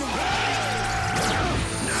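Action-show sound effects over a steady background score: a loud, sustained rushing and crashing effect whose tones slowly fall in pitch.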